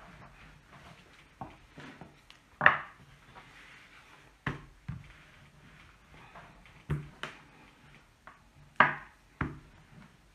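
Rolling pin worked back and forth over a sheet of fondant on a wooden table, giving irregular knocks and thumps against the wood every second or two. The loudest come about three seconds in and again near the end.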